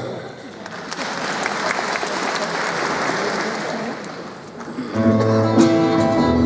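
Audience applauding for about four seconds. About five seconds in, an acoustic guitar and a small band begin playing the song's introduction.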